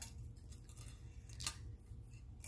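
Faint clicks of metal costume jewelry being picked up and set down on a marble countertop, the clearest about a second and a half in.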